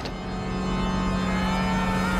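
Trailer sound design: a sustained low drone with a faint tone above it that slowly rises, swelling gradually in loudness.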